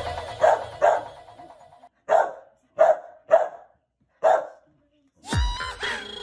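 A dog barking about seven times in short, irregular bursts, the first few over electronic music that fades out. The music starts up again near the end.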